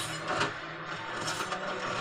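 Film trailer sound design: a steady, rough scraping noise bed with a faint low hum and no dialogue or music.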